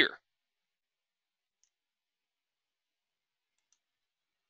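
Near silence between words, broken only by two faint, short clicks, about a second and a half in and again near the end.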